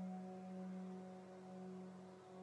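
Soft meditation background music: a sustained low drone with several steady higher overtones, in the manner of a singing bowl, slowly swelling and easing.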